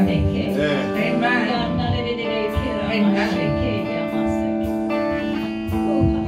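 Live worship music: an electric guitar strummed and held over sustained chords, with a voice singing along.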